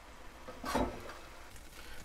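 Quiet pan sounds as browned ground beef is lifted out of a skillet with a slotted spoon: one brief scrape of the spoon in the pan a little under a second in, over a faint background.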